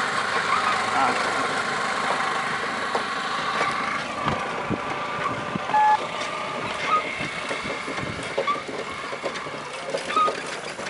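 Road traffic heard from a moving cycle rickshaw: a steady mix of vehicle noise, with a short beep about six seconds in.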